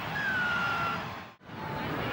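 Stadium crowd noise after a try, with one high whistle-like tone in the crowd that slides slightly down in pitch and lasts under a second. A little past the middle the sound briefly cuts out at an edit in the broadcast.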